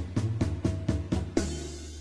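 Live band playing a drum fill into a song: a run of evenly spaced drum strokes, about four a second, with low pitched notes under each. It ends about a second and a half in on a heavier hit with a cymbal and a sustained chord.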